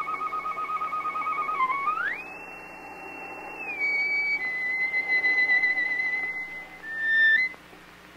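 Solo violin on a vinyl recording, playing high sustained notes with vibrato. About two seconds in it slides up sharply to a higher held note, then steps down through further held notes, with a brief drop in level near the end.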